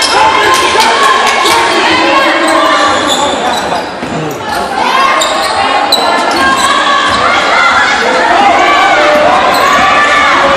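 Basketball game sounds in a large gym: a ball being dribbled on the hardwood floor, sneakers squeaking, and players and spectators calling out, all echoing in the hall.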